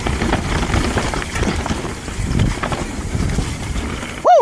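Ibis Ripmo mountain bike rolling fast down a dirt singletrack: tyres on dirt with scattered small clicks and rattles from the bike, under heavy wind noise on the camera microphone.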